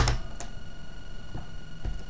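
Three faint clicks from hands working an analog multimeter's rotary range switch, over quiet room tone with a faint steady high whine.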